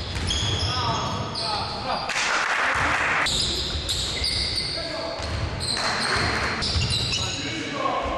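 Basketball game sounds in a large gym hall: a ball bouncing on the court, many short high-pitched squeaks from sneakers, and players' voices.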